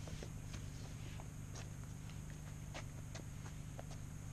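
Light, irregular knocks and scuffs of a sheet of 3/4 inch plywood being handled and slid out of the back of a van, with footsteps on the road.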